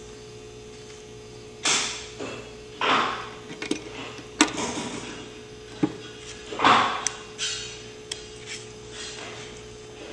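Clicks, knocks and rustles from working a Maier-Hancock 16mm hot splicer by hand: its clamps being released and the freshly cemented film being handled. These come as about eight separate short sounds over a steady faint hum.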